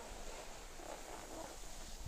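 Skis sliding over packed, groomed snow while skiing downhill, a steady hiss, with low wind noise on the microphone.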